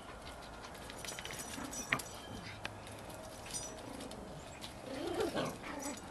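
A dog whining softly in short wavering whimpers, a little louder about five seconds in, with faint scattered clicks.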